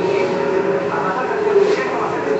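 Indistinct voices of several people talking at once, with no single voice standing out.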